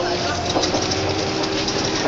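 Inside a moving city bus: steady drivetrain whine and road rumble, with a quick run of rattles and clatter from the bus body about half a second in.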